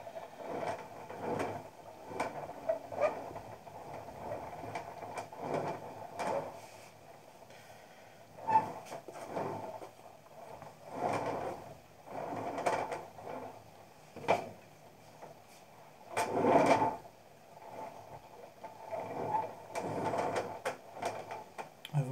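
A hand tool scraping and rubbing over the wet clay wall of a coil-built pot to smooth it, in a series of irregular rasping strokes, one every second or two, the strongest about three quarters of the way through.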